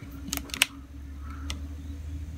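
A few sharp plastic clicks from a handheld clamp meter being handled and its jaws closed around a battery cable, over a steady low electrical hum.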